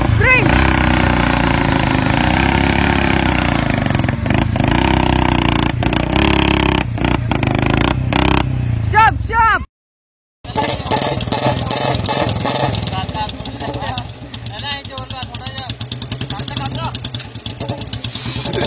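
Motorcycle engines running and revving, with people shouting over them. The sound drops out completely for under a second about halfway through, then a motorcycle engine runs on with a fast, even beat.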